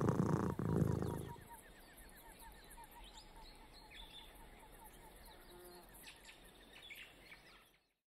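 A low rumble for about the first second and a half, then faint bird chirps repeating a few times a second over quiet ambience.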